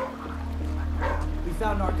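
A dog barking a few times, mostly in the second half, over a low, steady music drone.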